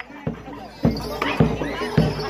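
Bantengan accompaniment music: drum beats about every half second over sustained steady tones, with voices shouting over it.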